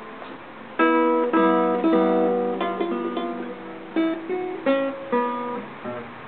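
Acoustic guitar music: plucked and strummed chords starting about a second in, each starting sharply and fading.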